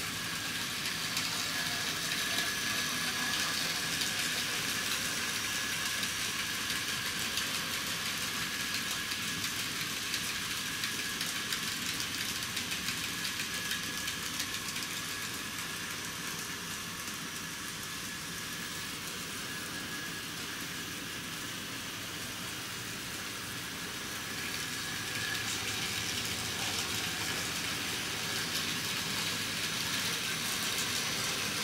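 N-scale model trains running through a hidden staging yard and helix: a steady whir of small electric locomotive motors and wheels on the track, with a faint steady whine. It is a little louder at first, eases off around the middle and grows again near the end.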